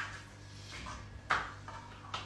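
Light knocks of a knife and a sea bass fillet being handled on a cutting board, with one sharper knock a little past the middle, over a faint steady low hum.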